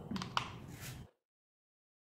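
A few faint clicks and the last trace of a voice, then the sound cuts out to dead silence about a second in.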